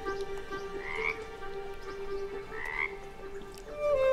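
A frog croaking twice, each call short and rising, about a second and a half apart, over soft sustained background music.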